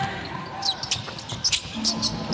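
Basketball being dribbled on a hardwood arena floor, a run of sharp bounces, over the low background of the arena.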